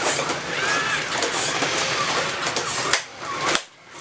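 Robosapien RS Media toy robots walking, their small gear motors whirring with a stream of plastic clicks and clatter. The noise drops off sharply about three seconds in, leaving a few separate clicks.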